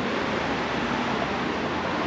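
A steady, even hiss that starts abruptly and holds at one level, with no clicks, knocks or tones in it.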